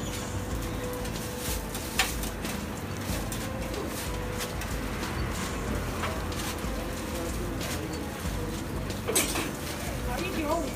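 Food-stall kitchen noise at a hot griddle: a steady low hum with a faint steady tone, broken by two sharp utensil clacks, one about two seconds in and a louder one near the end.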